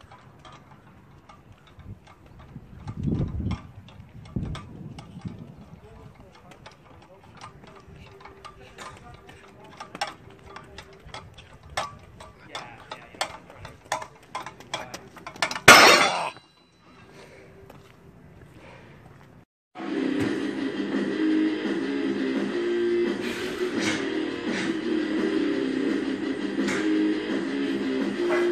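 Iron weight plates clinking and knocking on a strongman yoke as it is carried, with one loud crash a little past halfway as it comes down. From about two-thirds in, background music plays.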